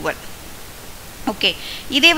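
Speech only: short fragments of a spoken explanation around a pause, over a steady hiss of microphone noise.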